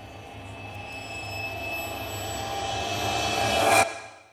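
Logo intro sound: a whooshing swell with sustained tones that builds steadily louder and ends on a sharp hit just before the end, then dies away quickly.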